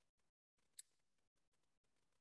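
Near silence with one faint, brief click about three-quarters of a second in.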